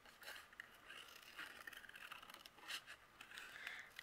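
Faint, irregular snips of small scissors cutting around the curves of a shape in white cardstock.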